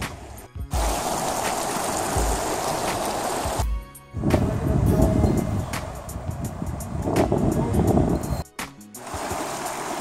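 Shallow river water running over a gravel bed, a steady rushing noise that drops out briefly three times.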